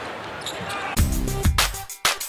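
Basketball arena ambience from the game broadcast, cut off about a second in by music with a heavy beat.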